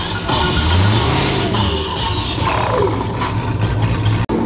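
Loud DJ music over a Chevrolet Camaro's engine as the car pulls away at low speed, its low exhaust note swelling about half a second in and holding steady.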